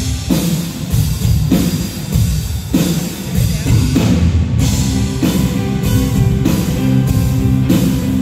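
Live rock band playing the instrumental opening of a song: drum kit and electric guitar over a steady, regular beat.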